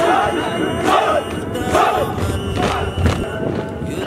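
A group of men's voices chanting in unison, in short repeated calls.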